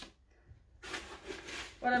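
A plastic scoop digging into and scraping loose coco-coir potting mix in a plastic bucket: a short dry rustle lasting about a second.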